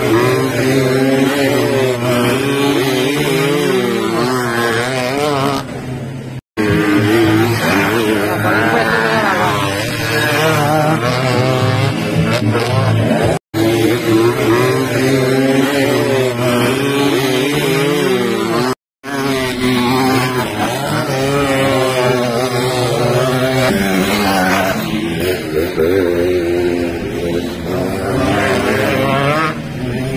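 Small two-stroke dirt motorcycles (AKT AX100s) revving up and down as they ride a dirt track, engine pitch rising and falling continually. The sound cuts out briefly three times.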